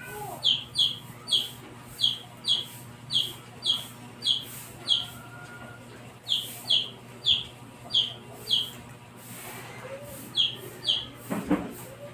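A bird chirping over and over, loud short chirps that slide downward, often in pairs, about two a second, with two breaks in the run.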